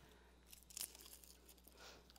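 Faint papery crackling and rustling of garlic skins being peeled off crushed cloves by hand, a few light crackles starting about half a second in.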